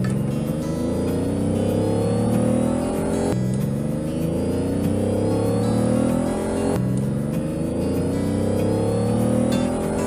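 Go-kart engine sound effect revving up, a rising drone that starts over about every three and a half seconds, three times in all.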